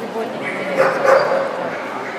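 A dog barking about a second in, over the steady chatter of a crowd of spectators.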